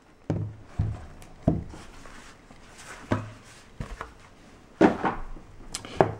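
Wooden display case being handled on a wooden table: several short knocks and thumps spread through, with light rubbing between them, as the case is moved and lifted.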